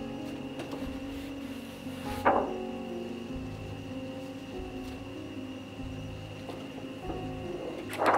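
Background solo acoustic guitar music, with a single sharp thump about two seconds in.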